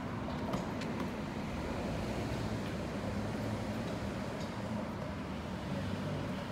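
A vehicle engine idling: a steady low rumble, with a few light clicks in the first second.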